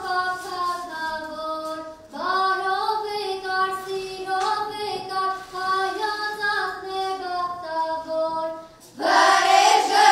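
A group of children singing a melody together, with long held notes. The phrase breaks off briefly about two seconds in, and again near the end, where the singing comes back louder and fuller.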